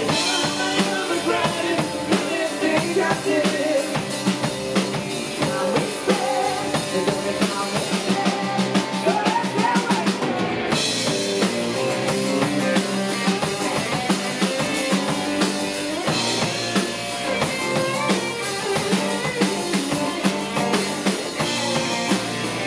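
Live band playing an instrumental break with no vocals: a bending electric guitar lead over a full drum kit and strummed acoustic guitar. The cymbal wash thins out for a couple of seconds near the middle, then comes back.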